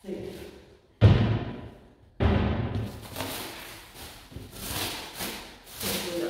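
Two heavy thuds about a second apart, the second the longer-ringing, followed by lighter knocks and scuffing: items handled and knocked against wooden wardrobe parts and the floor.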